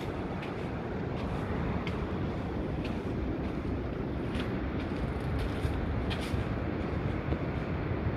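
Steady low rushing noise of ocean surf and wind, with a few light clicks of footsteps on sand and small stones.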